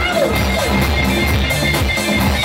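Live band music played loud through a stage PA, with electric guitar, keyboard and drums keeping a steady beat.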